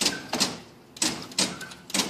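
Bottle screen-printing machine being jogged: a run of sharp metallic clanks, about five in two seconds, as the press steps through its motion in short bursts.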